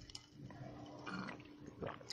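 A pause between spoken sentences: faint room tone with a low, steady hum and a brief, soft sound about a second in.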